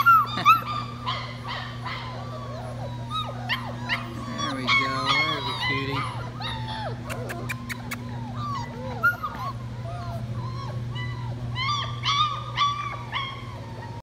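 A litter of four-week-old German Shepherd puppies whimpering and yelping in short, high, arching squeaks that come on and off throughout, over a steady low hum. A quick run of sharp clicks comes about seven seconds in.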